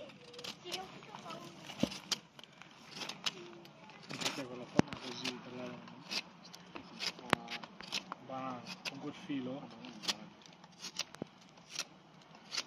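Fixed-blade knife carving a point on a dry wooden stick: a string of short, sharp cutting and scraping strokes at an uneven pace, with a few louder clicks of the blade biting the wood.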